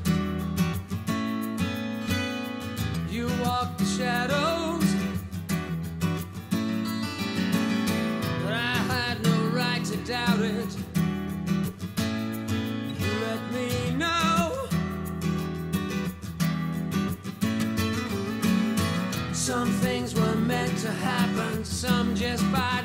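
A recorded rock song with strummed acoustic guitar, a steady bass line and a male lead vocal.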